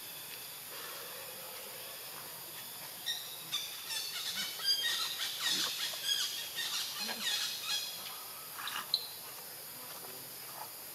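Rapid, high-pitched chirping animal calls for about five seconds, starting about three seconds in, with one last sharp call near the end, over a steady high hiss.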